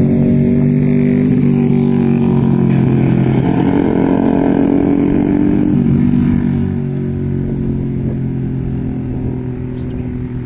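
Motorcycle engine running close by, steady and loud. Its pitch rises through the middle and it eases off about two-thirds of the way through.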